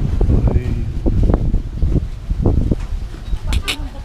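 Indistinct voices of people close by, with rumbling handling noise on the microphone and a brief rustle near the end.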